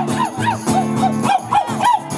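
Acoustic guitar strumming under a quick run of short, rising-and-falling yelps, about five a second.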